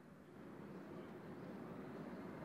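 Faint, steady background noise with no distinct events, growing gradually louder.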